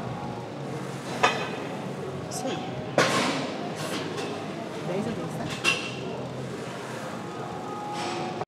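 Three sharp metallic clanks of gym weight equipment, the loudest about three seconds in, over a steady background of gym noise and indistinct voices.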